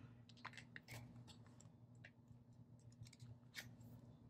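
Faint rustling and soft irregular clicks of paper sticker sheets and sticker books being flipped through and handled.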